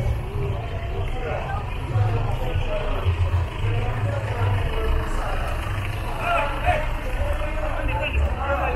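Cars and a pickup truck crawling past at close range with their engines running, a steady low rumble, under the chatter of a crowd on foot.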